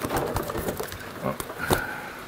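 Rustling, scuffling and clicks of a coturnix quail being caught by hand inside a wire-and-plywood hutch, with a short, steady, high call from a quail near the end.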